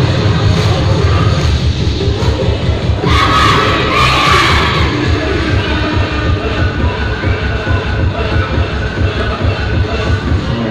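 Dance music with a steady beat plays loudly while a crowd of students cheers and shouts. The cheering swells to its loudest about three to five seconds in.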